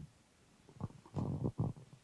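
Handling noise from a handheld microphone: a few low, muffled rubs and bumps, starting about a second in.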